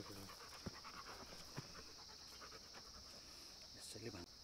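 Faint panting of a dog over a steady, high insect buzz, with a couple of soft clicks.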